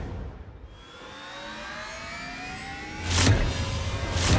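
A dramatic background-score riser: a tone with several overtones climbs slowly, ending about three seconds in with a loud hit that leads into the music.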